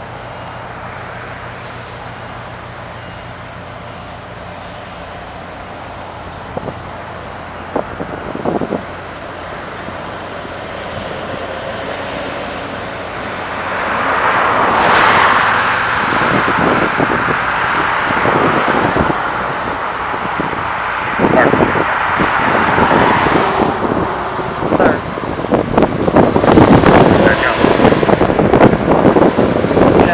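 Semi truck's diesel engine running as the truck moves through the lot, with steady traffic noise underneath; the sound grows louder about halfway through and again a few seconds later.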